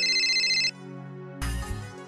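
Mobile phone ringtone: a loud, rapidly pulsing high electronic trill that cuts off about two-thirds of a second in, over steady background music. A short noisy burst with a deep low end follows about a second and a half in.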